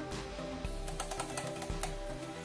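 Background music with steady tones, and a quick run of light clicks about halfway through.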